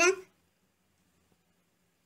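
A woman's voice finishes a word just at the start, then near silence with only a faint steady low hum.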